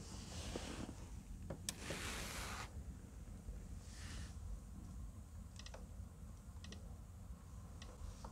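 Faint clicks of steering-wheel buttons being pressed in a quiet car cabin, a few scattered single clicks and small quick clusters, with short soft hissing rustles in between.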